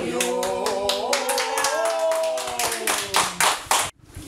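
A small group of voices holds one long sung note while clapping along in time. The claps speed up into quicker applause near the end, and the sound cuts off abruptly.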